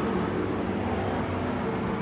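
Steady outdoor traffic noise: an even wash of passing road sound with a low, steady engine hum.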